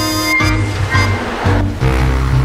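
Background music with a pulsing bass line and sustained synth-like notes. A rushing, whooshing noise swells up and fades away in the middle.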